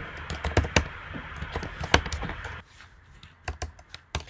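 Computer keyboard being typed on: quick, irregular key clicks over a steady hiss that drops out about two and a half seconds in, after which only a few clicks are left.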